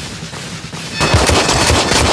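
A fast drum beat, then about a second in, dense rapid gunfire from several pistols fired into the air at once.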